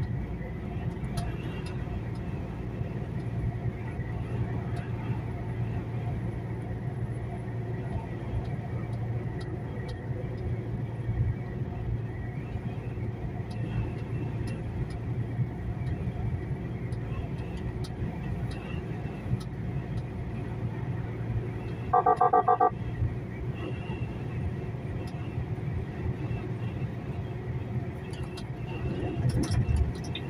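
Steady low engine and road rumble heard inside a truck cab cruising at motorway speed. About 22 seconds in, a brief loud pitched tone sounds for under a second.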